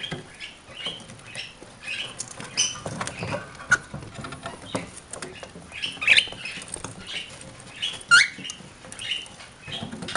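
Pet cockatiels and a budgie making short, scattered chirps and squeaks, with a louder rising call near the end. Sharp clicks and scrabbling come from their claws and beaks on the deer antlers they are perched on.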